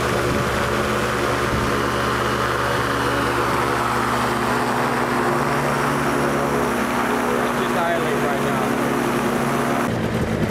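Powered parachute's engine and pusher propeller running at high RPM during a ground run-up to set the prop pitch, a steady even drone; its note shifts slightly about halfway through. The engine is running smoothly.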